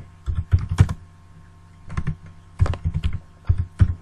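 Typing on a computer keyboard: quick runs of keystrokes, with a pause of about a second after the first run.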